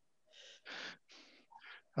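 Quiet, breathy laughter from a woman: about five soft puffs of breath in quick succession, with hardly any voice in them.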